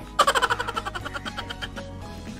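A person giggling: a quick run of short laughs, loudest at the start and fading out over about a second and a half.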